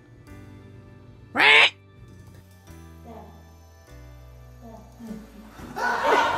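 Background music, with one short, loud squawk rising in pitch about a second and a half in. A burst of noise starts near the end.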